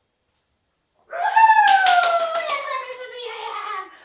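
A woman's long, high-pitched drawn-out exclamation, sliding down in pitch, with a quick run of hand claps early in it: excited praise for a dog.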